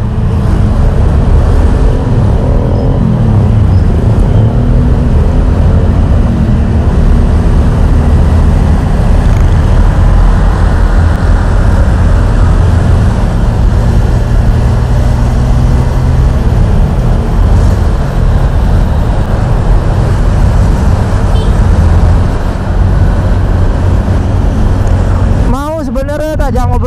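Steady, loud wind rumble on an action camera's microphone while riding a motorbike at road speed, with the bike's engine and tyre noise underneath.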